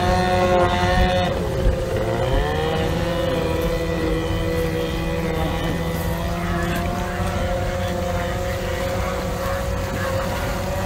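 Outboard racing engine of a hydroplane running at high revs, its pitch falling steeply about a second and a half in, then holding a steady lower run.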